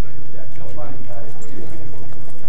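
Indistinct chatter of people talking, over a steady low hum.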